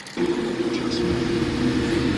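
Steady hum of a passenger airliner's cabin on the ground, a few level droning tones over an even rush of air, starting abruptly just after the beginning.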